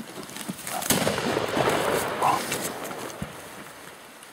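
A single gunshot from a hunting gun about a second in, followed by a couple of seconds of loud, rough rustling and crashing as a charging wild boar bursts through low scrub.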